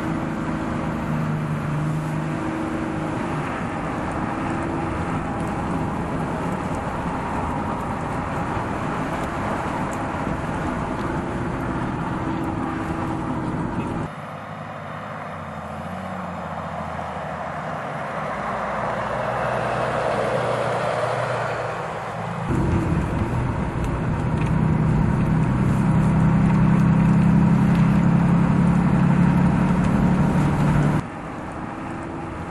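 A Ram 2500 heavy-duty pickup's engine and tyres under way on the road, a steady engine hum. About halfway through it cuts to a quieter pass-by that swells and fades, then loud steady engine running resumes for the last stretch.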